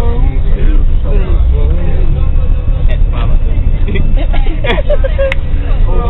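Steady low rumble of a moving bus's engine and road noise, heard from inside the passenger cabin, with brief scattered voices in a lull between sung passages.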